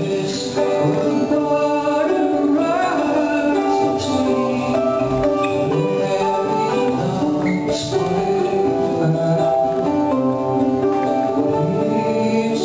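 Live acoustic song: a Portuguese guitar, twelve steel strings in six pairs, picking a bright melody over sustained keyboard chords, with a man's voice singing in places.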